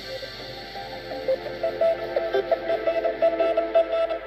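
Background music: a melody of short pitched notes, several a second, growing louder after about a second.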